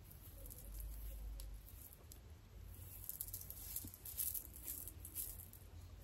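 Faint, scattered crackling and rustling of natural hair being untwisted and separated with the fingers during a twist-out takedown.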